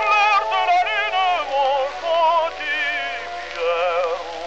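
Operatic tenor singing a French serenade with strong, even vibrato over instrumental accompaniment, in short phrases that end on a held note near the end.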